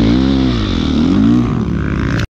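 Dirt bike engine revving hard, its pitch dropping, climbing to a peak about a second in, then falling again.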